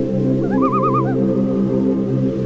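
Ambient meditation music: a steady, sustained low drone of several held tones. About half a second in, a short warbling trill sounds over it for roughly half a second.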